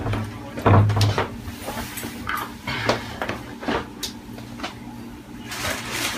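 Light clicks and fabric rustling of a metal cufflink being worked through a shirt cuff, with a low thump just under a second in.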